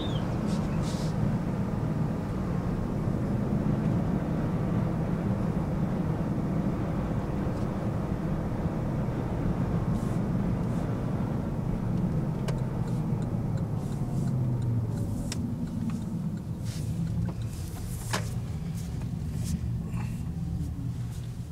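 Porsche Panamera S's 4.8-litre V8 and road noise heard from inside the cabin as the car drives along at a steady pace, a low, even rumble. It eases off slightly in the last few seconds, with a few light clicks.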